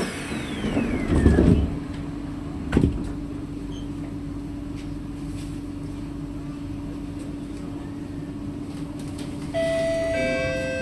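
Kawasaki/Sifang C151A metro train's sliding passenger doors closing: a falling whine and a heavy thump about a second in, then a second sharp thud near three seconds. After that a steady low hum from the standing train, and near the end a higher steady tone starts.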